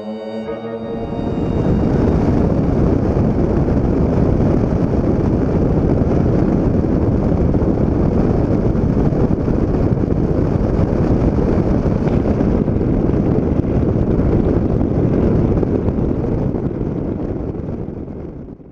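Steady rush of wind and engine noise on a camera mounted under an American Champion KCAB-series light aircraft flying fast and low. It builds in about a second in and fades near the end.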